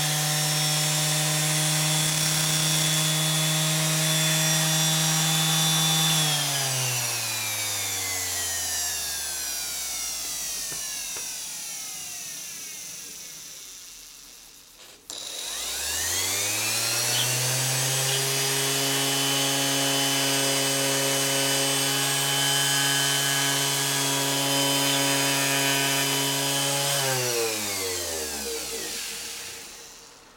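Electric random-orbit sander running at a steady whine, then switched off about six seconds in and winding down to a stop over several seconds. About halfway through it is started again and quickly runs up to speed, runs steadily, and near the end winds down again.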